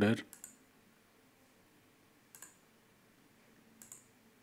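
Three short computer mouse clicks, a second and a half to two seconds apart, against near-quiet room tone.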